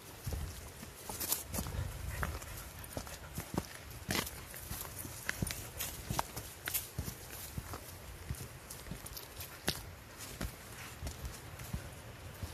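Footsteps walking along a frozen, frost-covered stony trail: irregular crunches and clicks, several a second, over a steady low rumble.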